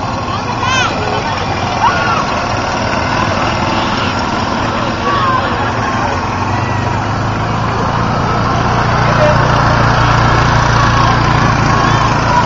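Crowd chatter with a small utility vehicle's engine running, its steady low hum growing louder in the second half as the vehicle draws near.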